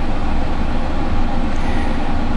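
Loud, steady low rumbling noise that starts abruptly at the cut from silence.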